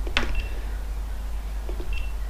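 Button presses on a GoPro Hero 5 sealed in a dome port housing: a click just after the start, and short high beeps from the camera as it steps through its modes, one early and one at the end.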